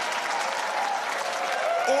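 Audience applauding steadily, with crowd noise.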